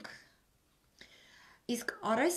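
A woman's voice: a phrase trails off, then a short pause with a faint breathy, whispered sound, and she starts speaking again near the end.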